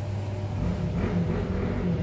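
Low steady rumble, with a faint wavering low hum coming in about halfway through.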